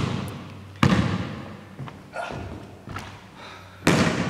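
A basketball thudding on a hardwood gym floor: a few loud hits, about three seconds apart, each ringing out in the big hall, with fainter bounces in between.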